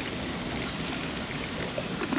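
Liquid coral food (amino acid supplement) pouring in a thin stream into a plastic mixing container onto food at its bottom: a steady trickle.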